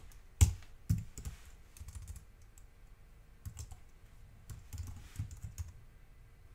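Typing on a computer keyboard: a few sharp keystrokes in the first second, then short runs of quieter key presses later on.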